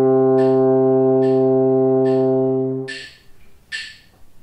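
French horn holding a long low note, the closing note of a G minor arpeggio exercise, which stops about three seconds in. A metronome clicks steadily underneath, a little faster than once a second, and is heard alone at the end.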